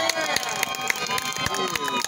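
A small crowd cheering and clapping, with several high-pitched children's voices shouting and calling out over scattered handclaps.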